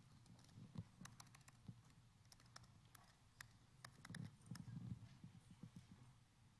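Faint, irregular clicking of laptop keys as a password is typed, with a run of soft low thumps about four to five seconds in.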